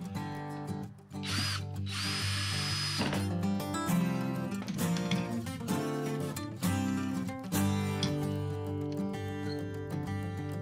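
Cordless drill-driver driving wood screws into a maple blank in two short runs, a brief one about a second in and a longer one just after. Each run has a high whine that rises and then holds steady. Acoustic guitar music plays underneath.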